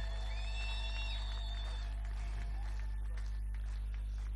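A steady low electrical hum, with a few faint, thin high tones in the first two seconds.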